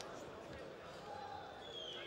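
Indistinct chatter of an arena crowd, many voices overlapping with no single clear speaker, and a brief high tone falling in pitch near the end.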